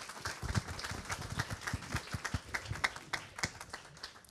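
Audience applauding: a dense run of hand claps that thins out toward the end.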